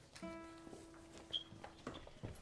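A single guitar note plucked and left to ring, its brightness dying away first and the note fading out after about a second and a half, followed by a few light knocks.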